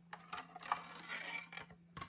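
Faint handling sounds of craft materials at a die-cutting machine: a few light clicks and soft scraping or rustling of paper and plastic as the pieces are positioned, over a faint steady hum.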